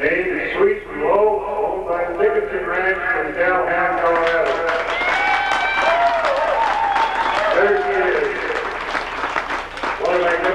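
A man's voice, the show announcer speaking over the arena loudspeakers, with the crowd applauding from about four seconds in until near the end.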